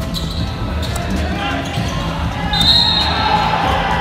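Basketball dribbled on a hardwood arena court in live game sound, with a brief high shrill note about two and a half seconds in.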